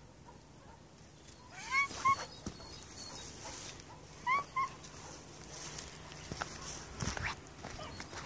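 Young tabby cat giving short, high chirping meows, two quick calls at a time, twice about two and a half seconds apart.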